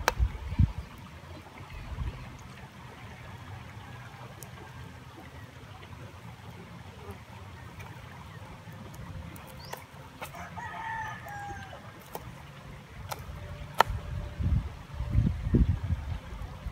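A knife tapping a few times on a plastic cutting board as red onion and chili are sliced. A bird calls once, briefly, about ten seconds in, and there are bouts of low rumble near the start and near the end.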